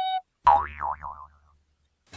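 A springy cartoon 'boing' sound effect: a sudden twang about half a second in whose pitch wobbles up and down and dies away within about a second.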